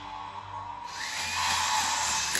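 Motorized retractable toy lightsaber whirring as its motor draws the nested plastic blade sections down into the hilt. The whir starts about a second in and grows louder.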